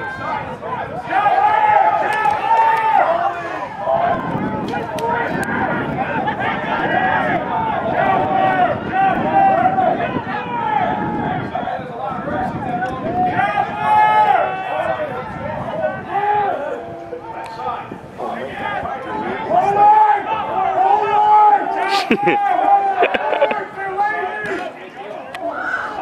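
Several people shouting and calling out at once on a rugby field, the voices overlapping and rising and falling throughout.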